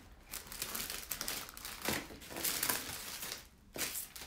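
Crinkling and rustling of things being handled, in irregular bursts with a short lull near the end.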